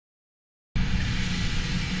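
Dead silence, then about three-quarters of a second in the sound cuts in abruptly to steady room noise: a low, even hum with a fainter hiss over it.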